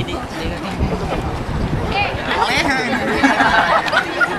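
Several people talking and chatting over one another, with a few raised, lively voices in the second half.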